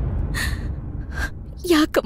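A woman crying, with short gasping sobs that come louder near the end, over a low rumble that fades out in the first second and a half.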